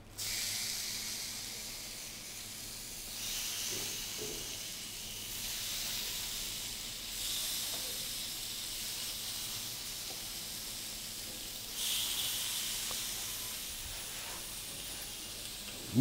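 Raw chicken slices sizzling on a hot ridged grill plate, a steady hiss that swells a few times as more pieces are laid down.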